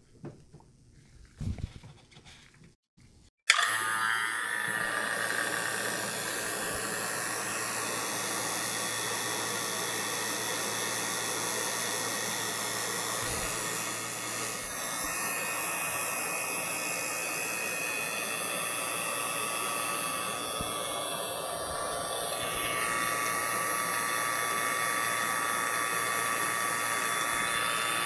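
Refrigeration vacuum pump (CPS 4 CFM) switching on about three and a half seconds in and then running steadily, pulling the mini-split line set back down into vacuum for the second pull-down of a triple evacuation. A few faint handling clicks come before it starts.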